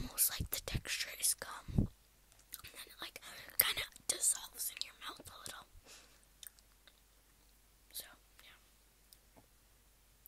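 Close-miked chewing and wet mouth sounds of someone eating soft candy, mixed with some whispering, busy for the first half and then thinning out to a few soft clicks.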